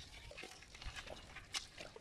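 A hand squelching and splashing in shallow water over soft mud, with scattered small clicks and wet pops and one sharper click about one and a half seconds in.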